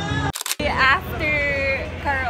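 Karaoke music stops abruptly with a short click about a third of a second in, and a high voice follows, calling out in long, drawn-out tones with street hubbub behind it.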